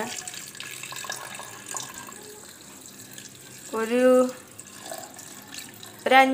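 Water pouring steadily from a jug into a steel vessel of mint leaves. A short spoken word breaks in about two-thirds of the way through.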